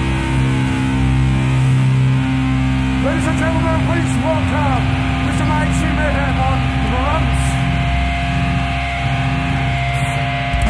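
Amplified electric guitar holding a droning chord through a live PA, with sliding, bending notes rising and falling from about three to seven seconds in, as the intro to a death-metal song.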